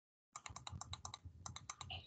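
A quick, uneven run of light clicks from computer input, about ten a second, starting after a brief moment of dead silence.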